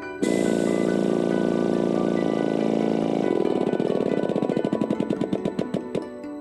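Pneumatic-hydraulic riveting actuator running as it presses a flowform rivet into steel sheets. It starts suddenly with a steady buzz for about three seconds, then changes to a rapid, even pulsing that stops just before the end.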